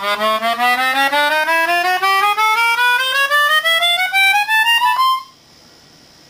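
Melodihorn, a keyboard melodica with harmonica-type free reeds, played in a quick ascending chromatic scale of evenly stepped notes, about five a second, climbing steadily and stopping on a high note about five seconds in.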